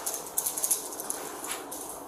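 Keys jingling with light metal clicks and clinks as a steel holding-cell door lock is worked.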